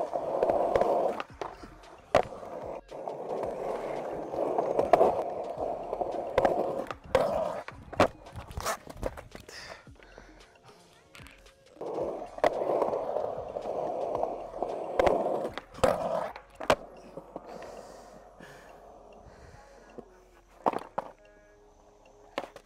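Skateboard wheels rolling on smooth concrete, with sharp clacks of the board popping, the trucks and deck grinding and sliding on a ledge, and landings. The run happens twice: about ten seconds of rolling and clacks, a short lull, then about five seconds more, with a last clack near the end.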